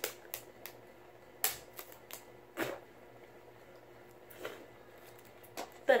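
Paper strips and clear sticky tape handled by hand: scattered light crinkles and clicks at irregular intervals, a few loud ones in the first three seconds, as the tape is fumbled onto a paper loop.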